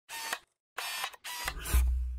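Animated logo sound effects: three short mechanical camera-like bursts, as of a lens focusing and a shutter, then a deep bass boom near the end that dies away.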